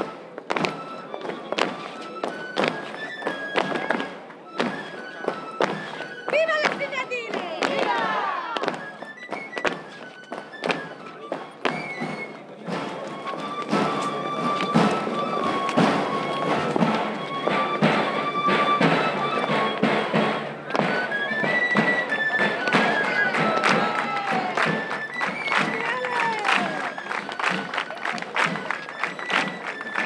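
Pipe and tabor, a three-holed flute and a tamboril drum, playing a traditional dance tune: a single high flute melody stepping from note to note over steady, continuous drum strokes.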